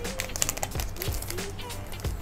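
Plastic cello-pack wrapper and trading cards being handled as the cards are slid out of the opened pack: a run of small clicks and crinkly rustles, over quiet background music.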